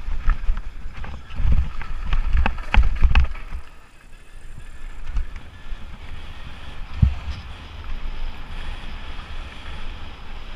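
Lapierre Spicy 327 enduro mountain bike rattling and knocking over a rocky downhill trail, with wind rushing on the action-camera microphone. The clatter eases off about four seconds in as the bike rolls onto smoother grass, leaving the wind noise, with one hard thump about seven seconds in.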